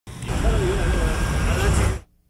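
Voices talking over a loud, steady low rumble, cut off abruptly at the end.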